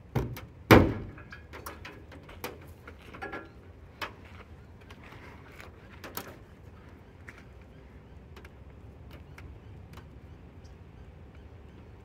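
Starlink Mini dish snapping down onto a magnetic mount on a car's metal hood: a sharp knock and a louder clack in the first second, followed by lighter clicks and taps of handling for a few seconds.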